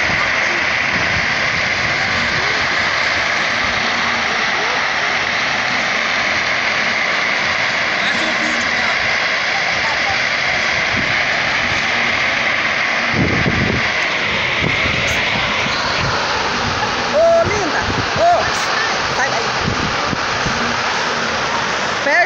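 A large brush and vegetation fire burning close by: a steady, dense crackling that holds level throughout.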